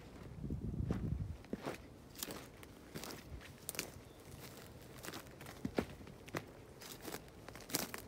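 Footsteps crunching on dry, gravelly dirt and pine-needle litter at an uneven walking pace, fairly quiet. A brief low rumble in the first second.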